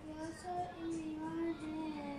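A young boy singing a slow song, holding long notes.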